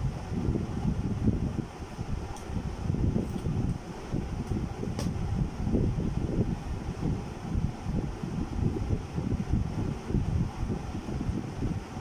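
Low, unsteady rumble of moving air buffeting the microphone, as from a room fan, with a few faint ticks.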